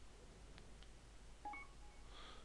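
Instant messenger's incoming-message alert: a short, faint electronic chime of a few beeps at different pitches about one and a half seconds in, over near silence.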